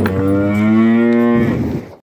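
A Jersey cow mooing right at the microphone: one long, level moo that dies away near the end.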